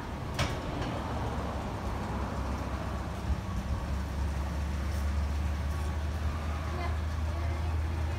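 A vehicle engine running, heard as a steady low rumble that grows louder about halfway through.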